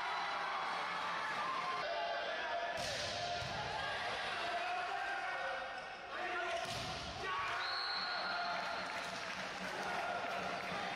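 Volleyball rally in a large hall: the ball is struck hard twice, about three seconds and six and a half seconds in, over continuous players' shouts and spectator chatter, and a referee's whistle sounds in the last few seconds.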